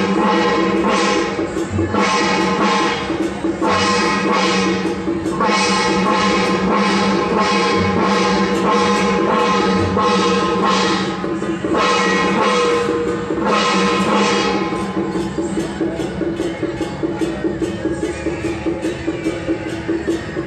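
Loud band music: a sustained melody of held notes over a steady, even beat, thinning out somewhat in the second half.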